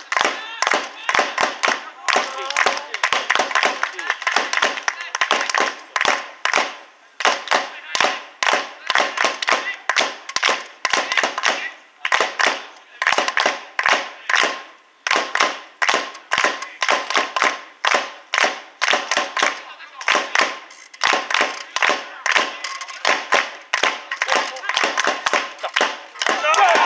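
Rhythmic hand clapping from supporters at a football match, about two claps a second, kept up steadily.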